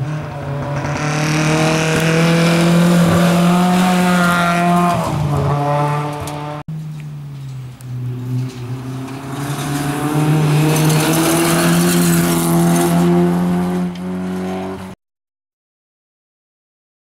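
Two rally cars, one after the other, driven hard on a gravel stage: each engine note climbs as the car accelerates toward the camera, with a hiss of tyres and thrown gravel. The sound stops abruptly near the end.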